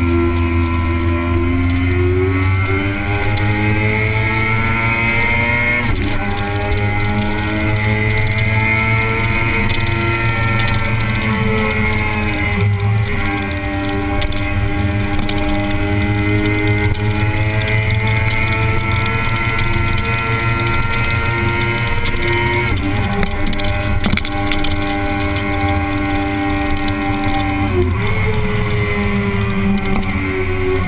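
Kawasaki ZX-6R inline-four sport-bike engine under way at road speed, its pitch climbing slowly as it pulls, then dropping sharply about four times as the rider shifts or eases the throttle. Wind rush over the bike is heard along with the engine.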